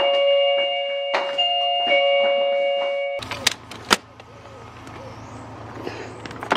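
Electronic doorbell sounding a descending two-note ding-dong chime twice. The chime then gives way to a few sharp knocks and a steady low hum.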